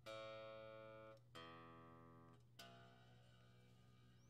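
Quiet electric guitar strings plucked one at a time during tuning: three single notes about a second and a quarter apart, each ringing and fading. Each string is struck again to check its pitch, because pressing on the guitar's tremolo system pulls it out of tune.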